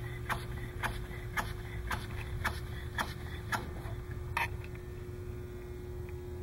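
Homemade single-cylinder, single-acting pneumatic piston engine running slowly, with a sharp click from each stroke about twice a second. The clicks stop after a louder one a little over four seconds in, leaving a steady hum.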